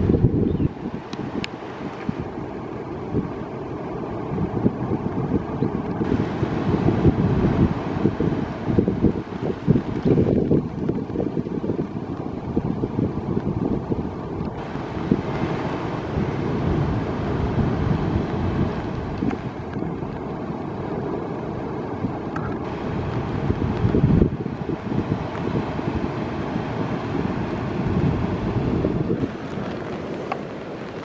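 Wind buffeting the microphone: a loud, low rumble that swells and falls with the gusts, with a fainter hiss above it.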